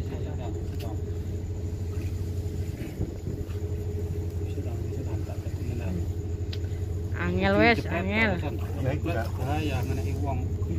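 A motor running steadily with a constant low hum. About seven seconds in, indistinct voices rise over it.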